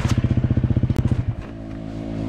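Trail motorcycle engine idling with an even, rapid pulsing beat; about a second and a half in the beat fades to a quieter, smoother steady note. A sharp click about a second in.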